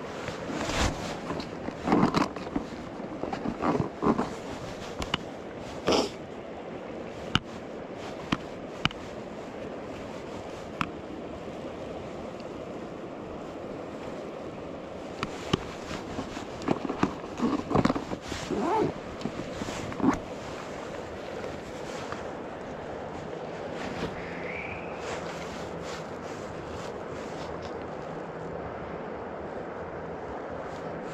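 River water running steadily, with two spells of close rustling, knocks and clicks from a fishing pack, jacket and landing net being handled: one in the first few seconds and one around the middle.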